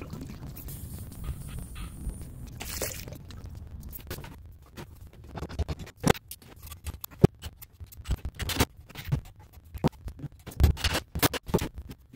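Hands working with tools and hardware: irregular sharp clicks, knocks and scrapes that begin a few seconds in, after a stretch of steady low noise.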